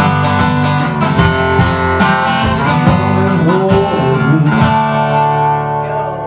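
Acoustic guitar playing a fast blues passage of rapid strums and picked notes, then a chord left ringing and fading away about five seconds in.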